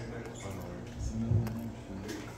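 Faint, indistinct voices and a low steady hum in a club room, with a few small scratchy clicks as the phone is moved against a backpack.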